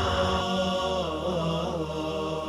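Slow melodic vocal chanting with long held notes over a steady low drone.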